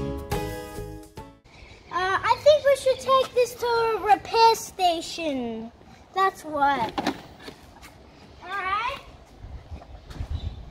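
Background music that stops about a second in, then a child's voice making long, high, wavering sounds without words for about three and a half seconds, followed by two shorter calls.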